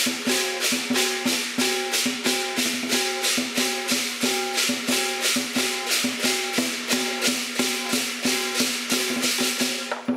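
Lion dance percussion, a drum with gong and cymbals, playing a steady, fast beat of about four strokes a second, the cymbals bright and splashy on each stroke.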